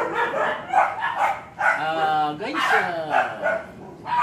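A man talking, drawing out one word for about half a second near the middle.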